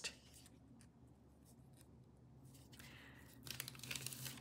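Faint crackle of paper backing being peeled off a fabric applique piece. It is mostly near silence, with a few soft ticks, and the rustle grows a little louder near the end.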